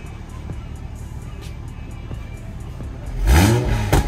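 Toyota GR Supra, freshly fitted with a Boost Logic downpipe and in sport mode, idling low and steady, then revved once about three seconds in, the pitch rising sharply and falling back.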